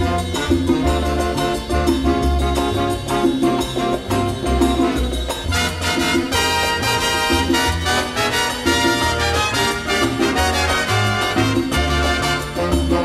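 Instrumental break of a Latin big-band samba recording, with no vocals. Bass and percussion keep a steady beat, and a fuller, brighter passage of the band comes in about halfway through.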